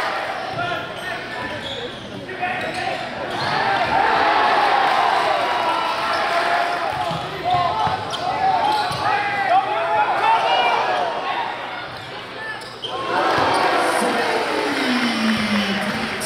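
Live game sound of a basketball game on a hardwood gym floor: the ball bouncing, sneakers squeaking in short gliding chirps, and players' and spectators' voices echoing in the large hall.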